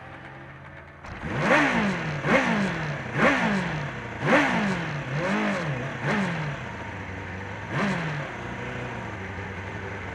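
Kawasaki ZXR400's inline-four engine, heard from the bike itself, blipped about seven times in quick succession, each rev rising sharply and falling away. After that it settles to a low, steady running.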